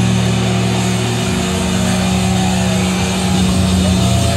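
Live thrash metal through a concert PA: distorted electric guitars and bass holding long, steady low chords that ring out.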